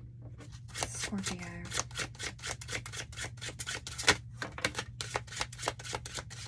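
A deck of tarot cards being shuffled: a quick, continuous run of crisp card clicks, with a short hummed "mm" from a voice about a second in.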